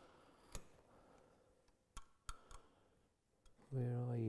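A few light, sharp clicks, spread out, of small hand tools against the wood as the walls of a groove are cleaned up with a knife. Near the end comes a short hummed voice that falls in pitch.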